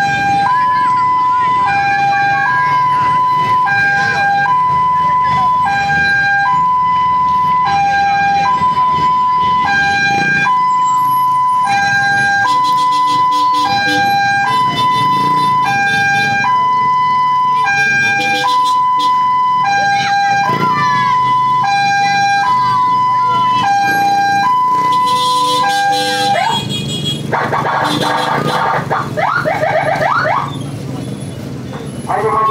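A vehicle's two-tone hi-lo siren sounds loud and close, alternating a higher and a lower note in a steady cycle of about two seconds. It breaks off about 26 seconds in and gives way to a harsher, rougher siren sound for the last few seconds.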